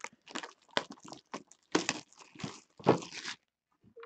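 Packaging of a small cardboard collectible box being torn open by hand: a string of short crinkling, tearing rustles, the longest near the end.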